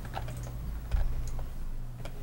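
A few scattered clicks of typing on a laptop keyboard over a steady low hum, with a soft thump about a second in.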